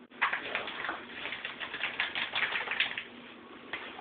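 Packet of powder bleach crinkling and rustling as it is handled and emptied into a plastic mixing bowl: a quick run of crackly clicks for about three seconds, with a few more near the end.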